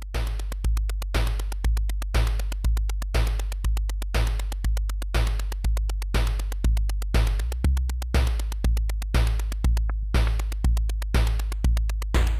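Eurorack modular synthesizer sequenced at 120 BPM: a synthesized kick drum on every beat, about two a second, with fast clicking percussion hits between. Under it runs a low analog-oscillator bassline whose pitch steps through a repeating eight-note sequence.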